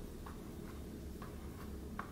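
Fork tines tapping paint onto a paper plate: a few faint, light ticks.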